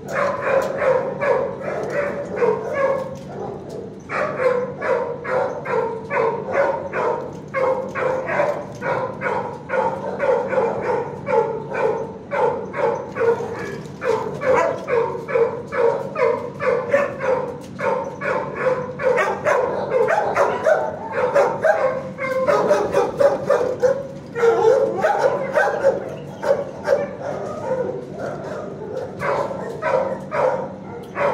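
Shelter dogs barking without letup in a kennel block, rapid overlapping barks about four a second, with brief lulls twice. A steady low hum runs underneath.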